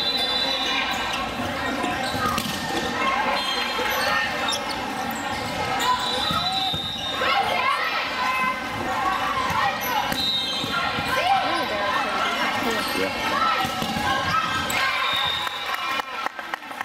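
Indoor volleyball being played: the ball being hit and striking the floor. Behind it runs a continuous hubbub of players' and spectators' voices, echoing in a large hall.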